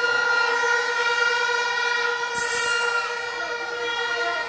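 A steady, sustained horn-like chord held over the stage sound system, with a brief burst of high hiss about two and a half seconds in.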